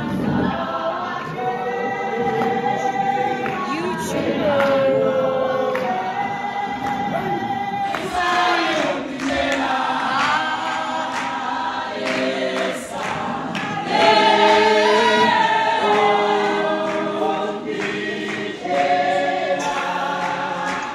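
Background music: a choir singing in a gospel style.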